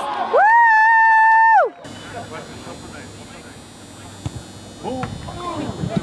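A spectator's long, high-pitched celebratory scream, held steady for over a second and sliding down at the end, right after a shot on goal. It gives way to low crowd murmur, with a short 'woo' shout near the end.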